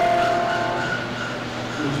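Final held chord of a church organ, steady and then fading away in the first second, leaving room noise.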